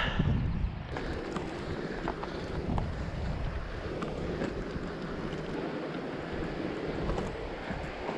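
Wind buffeting the microphone for about a second, then the steady rush of a fast, swollen river below, with a few faint clicks of footsteps on rock.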